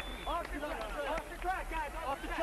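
Indistinct background voices, faint and overlapping, over a steady low hum.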